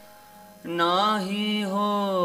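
A man begins singing Sikh keertan with harmonium about half a second in: one long held line that bends and glides in pitch over a steady harmonium note.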